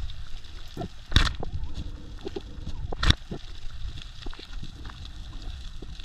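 Underwater sound: a steady low water rumble broken by two sharp knocks, a loud one about a second in and another about three seconds in. The knocks are a speargun's metal knocking against the rocky bottom, a clumsy movement that spooks the fish.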